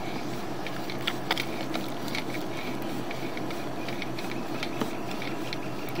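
Sewer inspection camera's push cable being pulled back and wound onto its reel: a steady mechanical hum with scattered light clicks.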